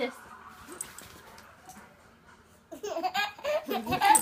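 A baby laughing in short, pitched bursts, starting a little under three seconds in.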